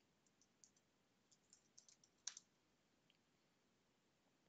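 Faint keystrokes on a computer keyboard: a dozen or so light, irregular taps, one a little louder just over two seconds in, with the last about three seconds in.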